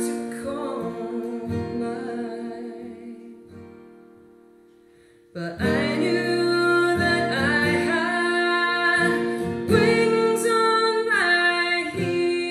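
A woman singing a folk song to her own acoustic guitar. The music rings out and fades almost to silence over the first few seconds, then guitar and voice come back in together about five seconds in.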